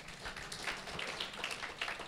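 Audience clapping: a brief, scattered round of applause made of many quick, irregular claps.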